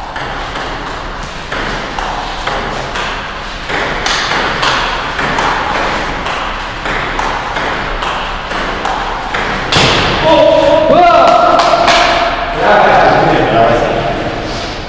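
Table tennis rally: the ping-pong ball clicking off the paddles and the table in quick succession for about ten seconds. Then a voice calls out loudly for the last few seconds as the point ends.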